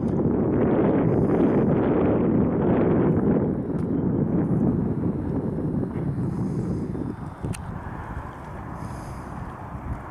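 Wind buffeting the microphone, a loud low rumble that eases off after about seven seconds.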